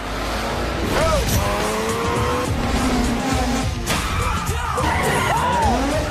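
Sports car engines revving and tyres squealing as cars slide, with music underneath; the squeals come about a second in and again near the end.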